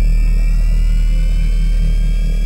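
Synthesized sci-fi sound effect of an energy lift rising: a deep steady rumble with a pulsing low hum and a thin whine that climbs slowly in pitch.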